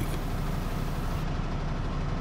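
Semi tractor's diesel engine idling steadily with a low rumble.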